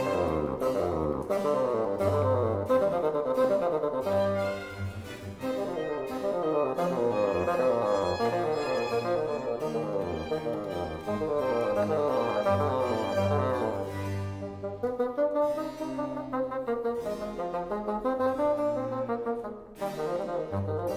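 Bassoon playing fast running passages in a Baroque concerto, accompanied by bowed strings and harpsichord.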